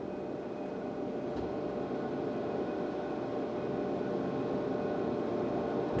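Schwabe SR-230 hydraulic trim press running: a steady mechanical hum and hiss with a few faint steady tones, growing slowly louder.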